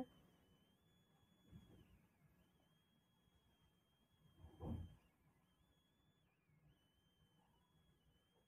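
Near silence: room tone, with one brief soft sound about four and a half seconds in.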